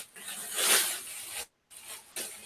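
Clear plastic bag rustling and crinkling in a few swells as a mountain-bike frame is pulled out of it, heard over a video call that briefly cuts out about three-quarters of the way through.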